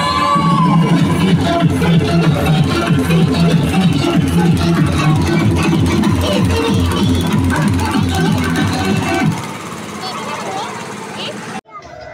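Loud dance music with a heavy, steady beat played over loudspeakers. It drops in level about nine seconds in and cuts off suddenly just before the end.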